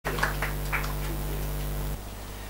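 A steady low electrical hum, with a few short, higher blips in the first second. The hum cuts off suddenly at the end.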